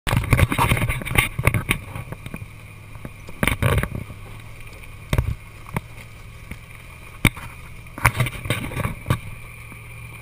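Ford Bronco's 351 Windsor V8 running low and steady as the truck crawls over rocks, with irregular knocks and clunks as the tyres and body bump over the rocks, thickest in the first couple of seconds.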